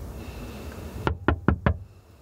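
Four quick, sharp knocks in a rapid run about a second in, over a low, steady rumble.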